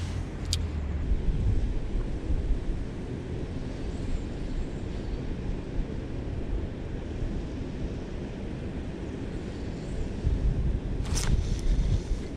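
Steady low rumble of distant road traffic, with a sharp click about half a second in and a few knocks about a second before the end.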